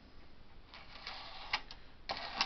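A stiff card scraping and clicking against the plastic needles of a Bond knitting machine. A short, light scrape comes just under a second in, then two sharp clicks close together.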